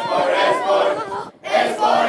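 A group of boys chanting together in unison in Swedish, two loud phrases with a short break between them.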